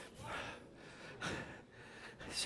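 A faint intake of breath, soft and brief, against low hall room tone.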